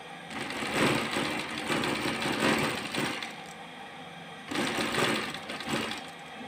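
Sewing machine running in two bursts as it stitches a folded strap of quilted faux leather: about three seconds of stitching, a pause, then a shorter burst near the end.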